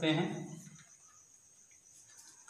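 Faint, steady high-pitched chirring of crickets. It runs under the tail of a man's spoken word and carries on once the word has ended.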